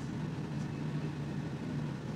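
Steady low hum of ramen-shop room noise, such as kitchen ventilation, with no distinct events standing out.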